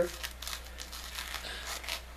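A fabric pocket holster, stiffened with cardboard inserts, being handled and flexed in the hands: an irregular crinkling rustle of many small clicks.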